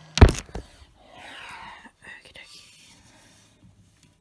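A loud knock right at the start, then about a second of scraping noise and a few light clicks as a reptile enclosure door is opened.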